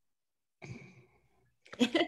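A woman gives a short breathy sigh about half a second in, then starts to laugh near the end.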